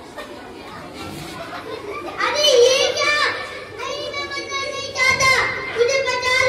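A young child's raised voice in drawn-out, gliding phrases, starting about two seconds in, after a couple of seconds of low room murmur.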